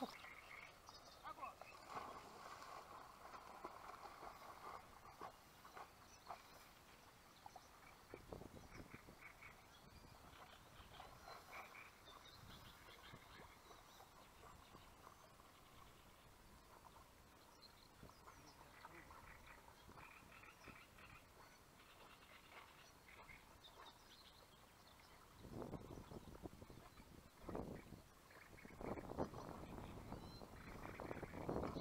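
Near silence: faint outdoor ambience with scattered faint calls, and a few soft noisy bursts starting about 25 seconds in.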